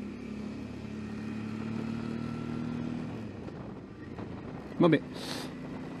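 Suzuki V-Strom 650's V-twin engine running at low speed while the motorcycle is ridden, its note rising a little and then easing off about three seconds in, with a light rush of wind.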